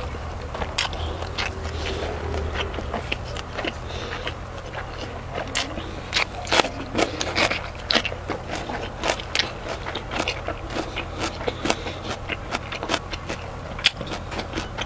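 Close-miked chewing and wet mouth sounds of a person eating rice, egg and cured pork. Many short, sharp smacks and clicks come at an irregular pace.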